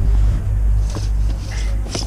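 Wind buffeting the camera microphone: a steady low rumble, with a few light clicks and rustles in the second half.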